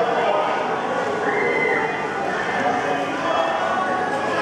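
Chatter of a group of children walking together, with their footsteps on a concrete floor. A short high-pitched sound cuts through a little after a second in.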